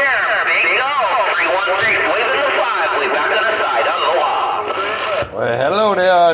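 A distant station's voice received over a CB radio and heard through its speaker: continuous talk, thin and cut off in the highs. Near the end the signal drops out briefly and a closer voice begins.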